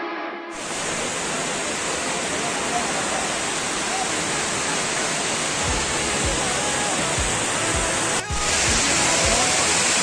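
Water rushing down a dam's stepped concrete spillway: a steady, even rush of falling water, with a brief break about eight seconds in and a few low thumps in the second half. The background music fades out in the first half second.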